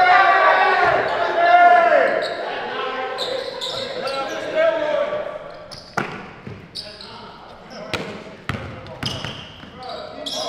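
A basketball bouncing on a hardwood gym floor: single sharp bounces about six seconds in and a few more near the end as a player dribbles. Before that, men's voices shouting loudly in the hall.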